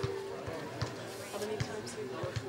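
A held instrumental note fades out in the first part, followed by scattered light knocks and handling noises, with faint voices.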